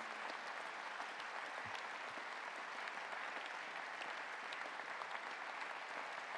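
A large audience applauding, a steady, even wash of clapping.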